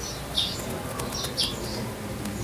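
Birds chirping: a few short, high chirps over a steady low background noise.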